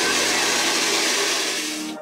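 A roughly 1800-watt hair dryer blowing steadily, a rush of air over a low motor hum, dipping in level near the end.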